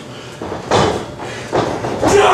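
Two heavy thuds in a wrestling ring, each with a short boom after it. The first comes a little under a second in and the second under a second later.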